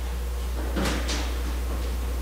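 Steady low electrical hum from the sound system during a pause, with a faint, brief noise about a second in.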